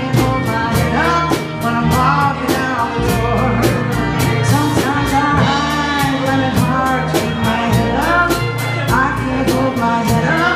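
Live blues-rock band playing: harmonica played into a vocal microphone with bending notes, over strummed acoustic guitar, electric bass and a drum kit keeping a steady cymbal beat.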